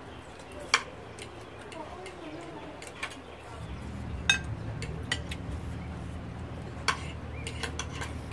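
Metal cutlery clicking and clinking against china plates as food is cut and eaten, in scattered sharp clicks, one of them ringing briefly near the middle. A low steady hum comes in about halfway.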